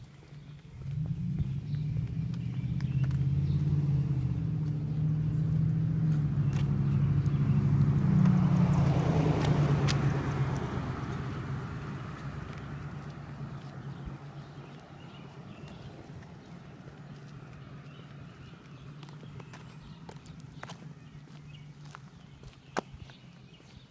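A motor vehicle driving by on the street: its engine hum comes in about a second in, grows louder to a close pass with a rush of tyre noise around nine to ten seconds in, then fades away, leaving a low hum.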